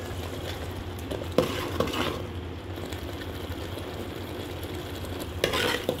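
Steel spoon stirring thick spinach gravy in a pan as it sizzles, over a steady low hum. Two light clinks of the spoon about a second and a half in, and a louder bout of scraping near the end.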